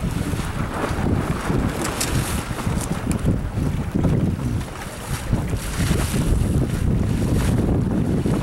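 Gusty wind buffeting the microphone, rumbling unevenly, over the wash of choppy water.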